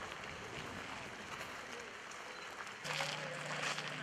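Outdoor ambience: a steady noisy hiss with faint voices. About three seconds in it switches abruptly to louder crackling noise over a low steady hum.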